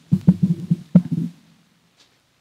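Microphone handling noise from a mic stand being touched and adjusted: a quick run of low thumps with a few sharp knocks over about a second and a half, then it stops.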